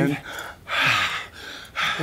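A man's voice: a spoken 'and', then a loud breathy gasp whose voice falls in pitch, and a fainter breath after it.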